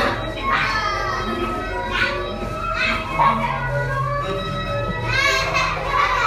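A group of young children shouting and squealing excitedly over steady background music, with a burst of high shrieks near the end.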